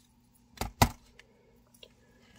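Two sharp clicks about a quarter second apart, a little over half a second in, from handling jewelry pliers and the metal parts of an earring.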